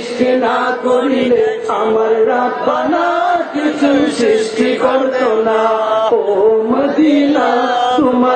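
A man singing a Bengali naat in praise of Madina, unaccompanied, in long drawn-out melodic phrases with gliding ornaments on held notes.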